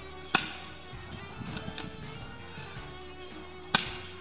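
Background music, cut by two sharp cracks from a spring-powered airsoft gun being fired: one about a third of a second in and one near the end.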